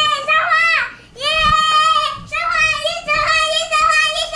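A young girl singing in high, drawn-out notes, with a brief break about a second in.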